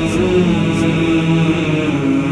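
Manqabat devotional chant: male voices hold long notes that shift slowly in pitch, without rhythmic accompaniment.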